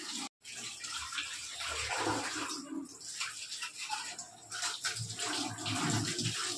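Tap water running onto a steel plate in a stainless steel sink as dishes are washed by hand, with repeated light knocks and clinks of steel utensils. The sound drops out completely for a moment just after the start.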